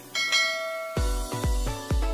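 A bell chime sound effect from a subscribe animation as its notification bell is clicked, ringing for about a second. Then electronic dance music with a heavy bass kick comes in, about three beats a second.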